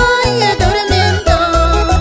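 A woman singing a Peruvian huayno in a gliding, ornamented voice over plucked requinto guitar, with low bass notes beneath.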